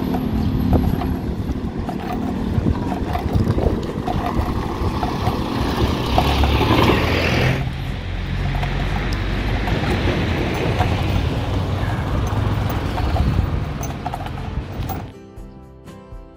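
Outdoor road noise from passing traffic, with a vehicle going by and swelling about six to seven seconds in. Near the end the noise falls away and background music comes in.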